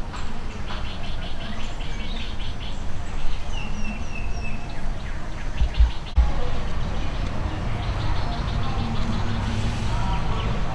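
Birds chirping outdoors, with a short run of high chirps about three to four seconds in, over a steady low background rumble and a couple of dull thumps near the middle.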